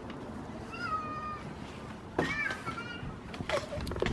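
A domestic cat meowing twice: a short, slightly falling meow about a second in, and a second meow that rises and falls just after the middle. A sharp knock near the end.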